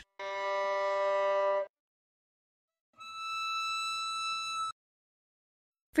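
Two steady demonstration tones, one after the other: a low note of about a second and a half, then after a short silence a much higher note of nearly two seconds, sounding the rule that a higher frequency gives a higher pitch.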